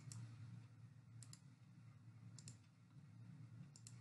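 Near silence: faint room tone with a low hum, broken by three faint double clicks, each a quick pair of ticks about a second apart from the next.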